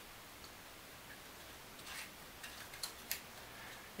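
A few faint clicks and taps of thin laser-cut wooden puzzle pieces being handled and fitted into their slots, starting about two seconds in, the sharpest near the end.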